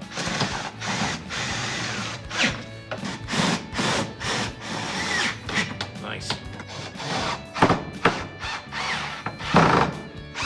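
Cordless drill-driver running in short bursts, driving screws through a steel angle bracket into a wooden desktop, with knocks of metal parts being handled, over background music.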